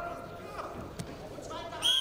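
Voices calling out in an arena, with a single sharp knock about halfway. Near the end a referee's whistle blows a loud, steady, shrill blast, halting the wrestling.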